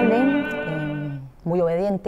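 An operatic male voice, with accompaniment, ends a held classical note that dies away about a second in. Near the end a short wavering hum comes from a woman's voice.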